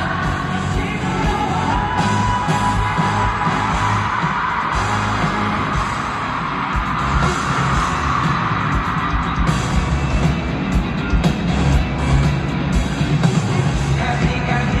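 Live K-pop concert performance: an amplified pop song over a steady bass beat, with the group singing into microphones in the first few seconds and fans yelling and cheering. The drum strokes grow sharper and more pronounced in the second half.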